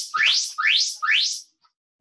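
Electronic start signal of an interval timer: rising chirps, three in quick succession about half a second apart, each sweeping up in pitch, with the tail of one more at the very start.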